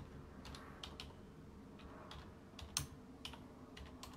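Faint, irregular clicks of keys being typed on a computer keyboard, about ten strokes scattered unevenly, over a low room hum.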